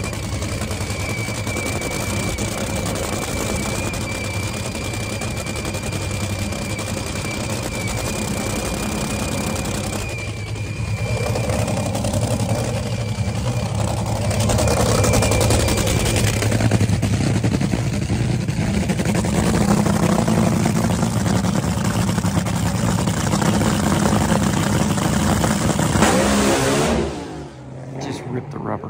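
Supercharged nitromethane V8 of a two-seat top fuel dragster running, a loud, dense, steady rumble that grows louder about halfway through and cuts off suddenly near the end.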